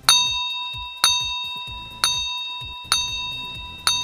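Countdown-timer sound effect: a bell-like ding struck once a second, five times, each note ringing and fading before the next.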